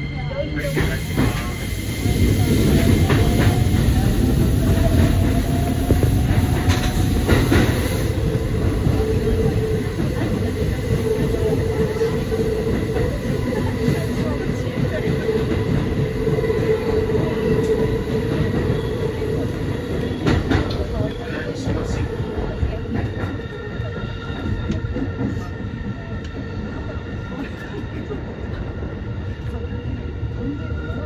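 Keikyu New 1000 series electric train running, heard from inside the driver's cab: a continuous rumble of wheels on rail. A whine rises in pitch over the first several seconds as the train picks up speed, and a steady high tone runs through the middle while it takes a curve.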